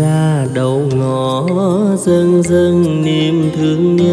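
A man singing a slow Vietnamese bolero with vibrato, over band accompaniment with a light, steady percussion beat.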